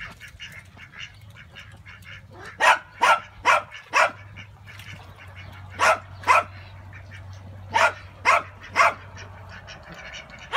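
Ducks quacking loudly in short series: four quacks starting nearly three seconds in, two more about three seconds later, then three near the end, each series about half a second between quacks.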